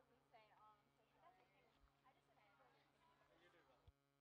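Near silence: faint chatter of children's voices over a steady low hum, with a soft thump near the end.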